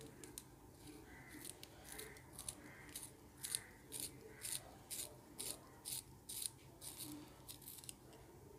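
A wooden B-grade graphite pencil turned in a small handheld metal sharpener, the blade shaving the wood in a run of short, quiet scraping strokes, about two a second.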